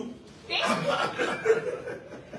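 Several people chuckling and laughing together with some talk mixed in; it starts about half a second in and dies down near the end.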